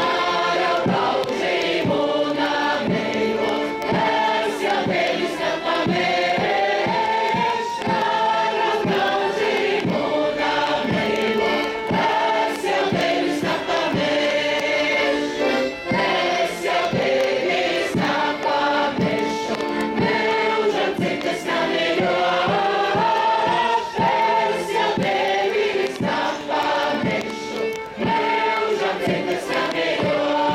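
A large mixed group of women and men singing a folk song together in chorus, with the audience singing along over a steady beat.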